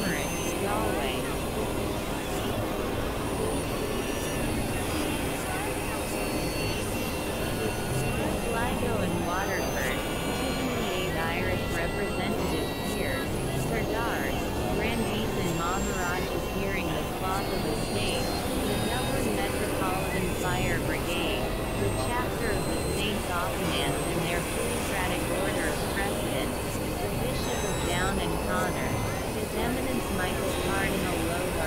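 Dense experimental electronic noise collage: a steady, rushing drone layered with many short chirping pitch glides and indistinct voice-like fragments, with no clear words.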